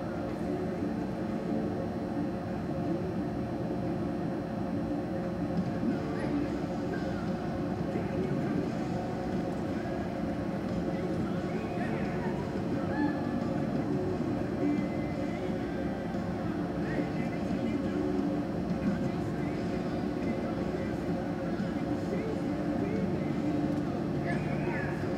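Steady hum of a large indoor arena, with faint, distant background voices now and then.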